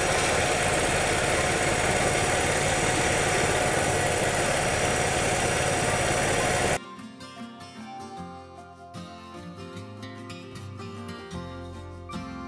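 Truck engine idling steadily; about seven seconds in it cuts off suddenly and quieter background music takes over.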